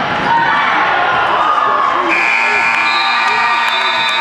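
Gym scoreboard buzzer sounding about two seconds in and holding as one steady buzz, signalling that the clock has run out at the end of the period. Voices and shouts from the crowd come before it and carry on under it.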